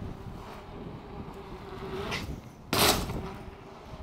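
Mountain bike rolling over concrete with a low, steady tyre hum, then one short, loud impact a little under three seconds in as the bike lands a drop to flat ground.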